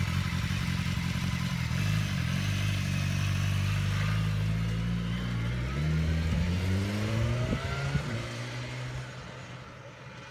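Motorcycle engine idling steadily, then revving as the bike pulls away, rising in pitch twice through the gears. It fades away near the end.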